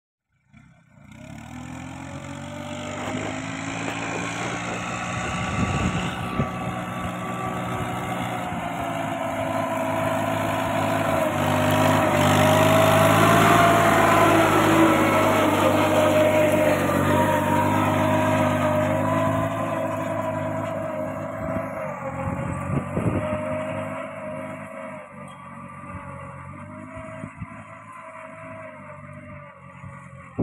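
Kubota 21 hp mini tractor's diesel engine running steadily as it pulls a ridging cultivator along sugarcane rows. It grows louder as it comes close, about halfway through, then fades as it moves off.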